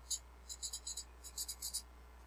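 Sharpie felt-tip marker writing numbers: a quick run of about a dozen short, high squeaky strokes that stop shortly before the end.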